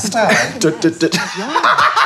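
Two people laughing loudly together, mixed with some speech.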